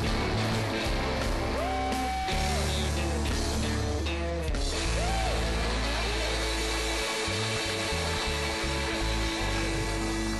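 Rock music with electric guitar, its lead line bending up in pitch and back down twice, over a steady bass.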